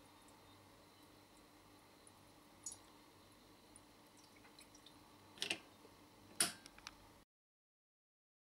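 Water poured from a glass jug into the filler spout of a Beka stainless steel bain-marie's water jacket: faint dripping and trickling, with two louder short splashes near the end.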